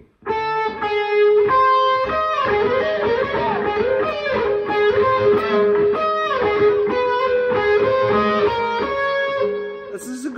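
Electric guitar played in a fast run of single notes stepping up and down, with one note ringing on steadily underneath. It is a practice drill of major-third intervals fingered with two fingers.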